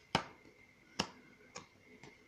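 Three sharp finger snaps: two loud ones about a second apart, then a fainter third about half a second later.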